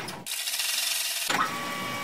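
Edited-in transition sound effect under a title card: a steady mechanical hum with a thin high tone, broken about a quarter second in by a second of hiss, then the hum returns with a quick rising sweep.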